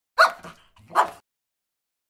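A dog barks twice, two short barks a little under a second apart.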